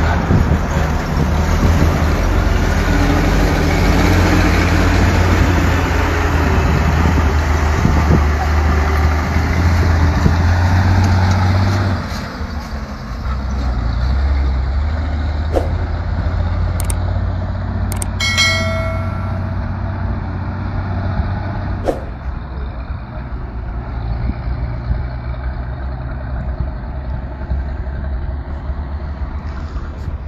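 Heavy diesel truck engine running close by, a steady low rumble that drops in level about twelve seconds in and carries on more quietly. A brief high tone is heard about eighteen seconds in, with a few sharp clicks scattered through.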